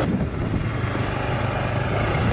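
Motor scooter engine running steadily at low speed, a continuous low hum.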